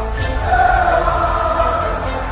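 Intro theme music with choir-like voices holding long notes over a steady low bass.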